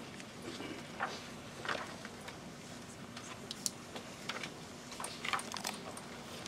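Quiet room tone in a hall with a steady low hum, broken by scattered faint rustles, clicks and taps from people in the room.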